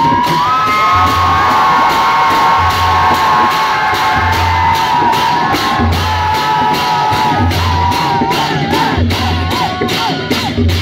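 Dhime baja ensemble: double-headed dhime drums beating in a steady rhythm with hand cymbals clashing on every stroke, while the crowd cheers and whoops over the playing.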